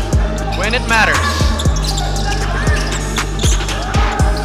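A basketball being dribbled on a hardwood court, a bounce roughly every half second, with sneakers squeaking briefly about a second in, over background music with a steady bass line.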